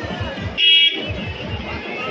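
One short blast of a bus horn, about a third of a second long, a little over half a second in. A steady low beat runs underneath.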